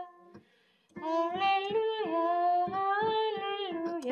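A woman singing a Catholic hymn melody in held notes over digital piano accompaniment. The singing breaks off for about the first second, then picks up again.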